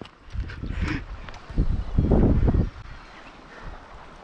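Gusts of wind buffeting the microphone, mixed with rumbling handling noise, loudest between about one and a half and two and a half seconds in, then easing off.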